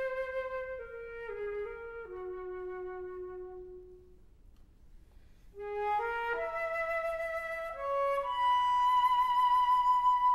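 Solo flute playing a slow melody: a phrase stepping downward and fading away, a short pause about halfway, then a rising phrase that ends on a long held high note with vibrato.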